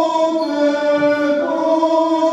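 Unaccompanied Greek Orthodox Byzantine chant: voices hold long, sustained notes in a resonant church and step to new pitches about one and a half seconds in.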